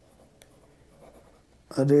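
Pencil writing on notebook paper, faint scratching with a small tick about half a second in. A man's voice starts speaking near the end.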